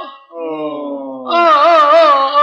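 Music from an Aleppine religious song (madih): a held note ends at the start, a softer phrase slides downward in pitch, then about a second and a half in a louder phrase with wide vibrato comes in.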